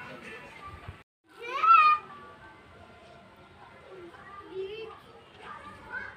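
Voices in the background, children among them, broken off by a brief gap about a second in. Right after the gap comes one short, loud, high-pitched call, followed by fainter chatter.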